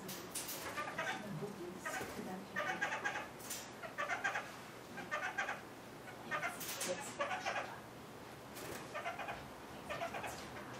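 Kakariki (red-fronted parakeets) calling: short clusters of chattering notes, repeated every half second to a second.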